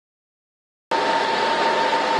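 Cooling fans of rack-mounted servers running under load: a loud, steady whir with a whine held on one pitch, cutting in abruptly about a second in.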